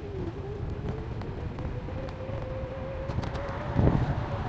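Electric bicycle being ridden: a steady, slightly wavering whine from its motor over low wind and road rumble, with a bump near the end.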